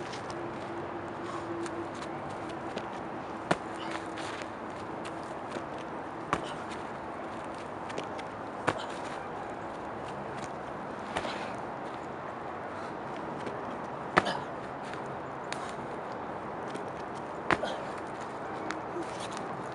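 Sharp single footfalls and landings on grass close to the microphone, a handful spread a few seconds apart, over a steady outdoor background hiss.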